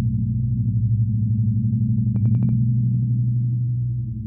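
Steady, slightly pulsing low electrical hum of a lit neon sign, with a brief rapid crackle of ticks about two seconds in.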